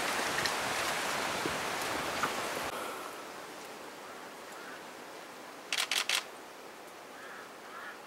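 A camera shutter fires three times in quick succession about six seconds in, a short burst. Before it, a steady hiss stops abruptly about three seconds in, and two faint short chirps follow near the end.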